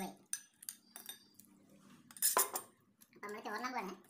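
Stainless steel plates and dishes clinking and clattering in a run of sharp knocks, the loudest clatter about two seconds in. A voice briefly near the end.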